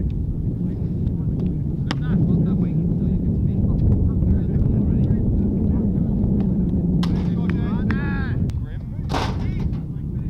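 Wind buffeting the microphone, a heavy low rumble throughout, with a sharp knock about two seconds in and voices calling near the end.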